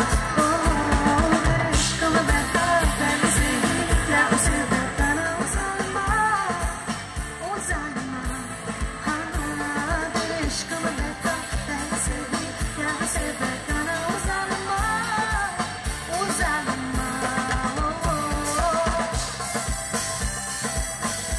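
A woman singing live into a microphone over a band, with a steady drum beat under the melody.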